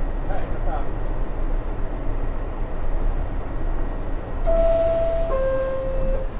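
R62A subway car standing in a station with a steady low hum from its equipment. About four and a half seconds in, the door-closing chime sounds, two held tones, the second lower than the first, as a hiss starts: the signal that the doors are about to close.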